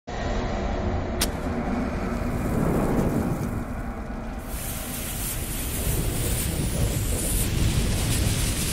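Logo-intro sound effects of a lit bomb fuse and flames: a steady low rumble under noisy hiss, with a sharp click about a second in. From about halfway the hiss turns brighter and fuller as the fire spreads.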